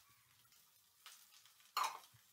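Quiet frying of chopped greens in a steel pan on a gas stove, with a faint short noise about a second in and one short, louder noise near the end as the pan is stirred.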